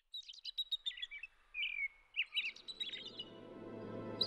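Small birds chirping, a rapid series of short twittering calls and brief whistled glides, with a soft sustained music bed fading in from about two and a half seconds in.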